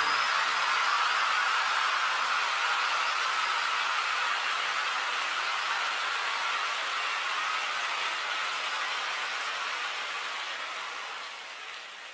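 A steady rushing hiss with no tune or pitch in it, fading slowly and evenly until it is almost gone near the end.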